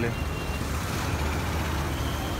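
Street traffic with an auto-rickshaw engine running close by: a steady low hum under a noisy road wash.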